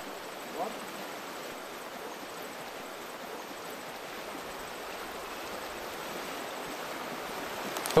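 River water running over a stony bed: a steady, even rush.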